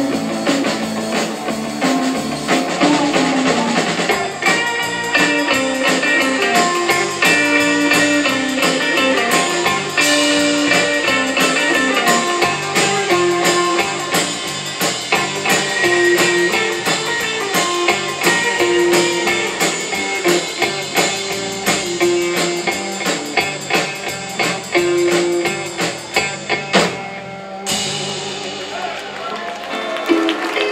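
Live rautalanka band, electric guitars over a drum kit, playing an instrumental with a picked lead-guitar melody. The tune stops suddenly a few seconds before the end, and audience applause follows.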